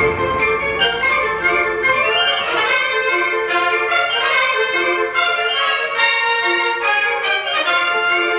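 A concert wind band playing sustained chords in the middle and upper registers, changing every second or so, with the low instruments silent.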